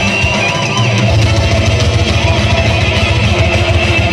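A heavy metal band playing live: distorted electric guitars over keyboard and fast, dense drumming, with a high wavering note near the start and the low end filling out about a second in.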